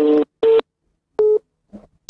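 Mobile phone call tones played through the phone's speaker into a microphone: three short steady electronic beeps, the first the longest, sounding as the call fails to go through.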